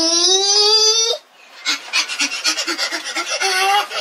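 A young boy vocalizing playfully. He holds one long, slightly rising "aah" that breaks off about a second in, then after a short pause runs off a rapid string of short repeated syllables, about five a second.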